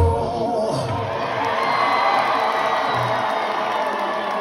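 Concert crowd cheering, whooping and screaming as a rock song ends, the band's final chord cutting off right at the start.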